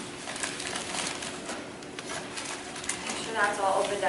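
A few seconds of room noise with faint scattered clicks, then a woman starts speaking near the end.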